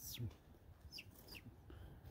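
Faint high bird calls: a quick downward-sweeping note at the start, then two short, high, falling chirps about a second in. A low thump just after the first note is the loudest sound.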